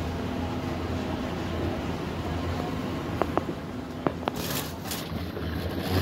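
Steady low hum of an airport moving walkway and terminal ventilation while riding the walkway. A few short clicks come about three seconds in, with a brief rattling clatter a little after four seconds as the walkway reaches its end.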